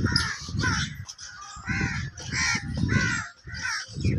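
Crows cawing repeatedly, harsh calls coming a couple a second, over a low rumble that comes and goes.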